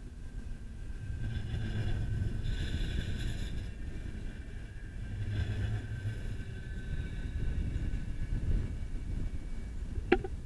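Luas light-rail tram passing close by: a low rumble that swells twice, with a thin high whine above it.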